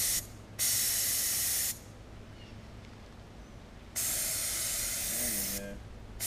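Gravity-feed paint spray gun hissing in three bursts as the trigger is pulled and let go, with a quieter pause of about two seconds before the last burst. These are test passes of thick enamel paint onto paper while the gun's airflow and spray pattern are being set.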